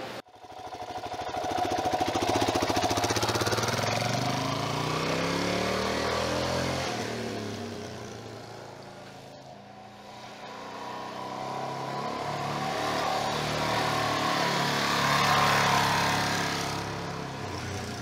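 Suzuki DR-Z400S single-cylinder four-stroke dirt bike engine riding past, its pitch rising and falling with the throttle. It is loudest in the first few seconds, fades to its faintest about halfway through as the bike gets far off, then grows louder again before dropping away near the end.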